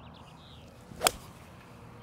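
A golf club hits a ball on a full swing: a brief swish leads into one sharp, crisp strike about a second in.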